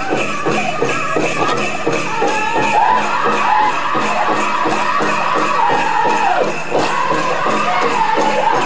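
Powwow drum group singing over a big powwow drum: a steady, quick drumbeat under high voices in downward-sliding phrases, with a jingling of bells over it.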